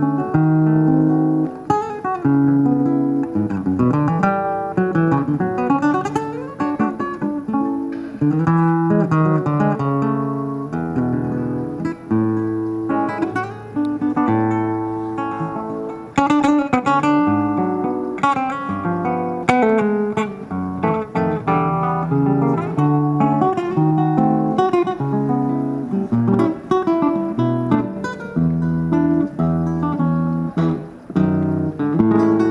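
Solo acoustic guitar played by hand, a steady stream of plucked melody notes over lower bass notes, with no pause.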